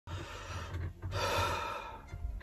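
A man's deep, audible breathing: a softer breath, then a louder, longer breath out through the mouth from about a second in. He is steadying himself with a nervous breath.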